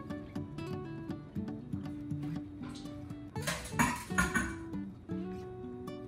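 Background acoustic guitar music, with a brief rustle, about a second long, that starts about three and a half seconds in.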